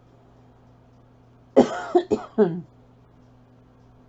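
A woman coughing: a quick run of three or four coughs lasting about a second, starting about a second and a half in.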